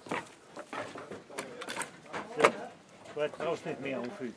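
Several sharp knocks of wood and plastic crates being handled and unloaded from a metal utility trailer, the loudest about two and a half seconds in. Indistinct voices can be heard between the knocks.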